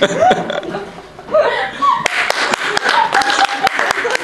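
Audience laughing, then clapping that breaks out about halfway in, with the laughter carrying on over the claps.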